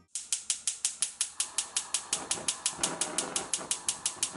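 Gas hob's electric spark igniter clicking rapidly and evenly, about seven sharp ticks a second, while the burner knob is held turned to light the flame.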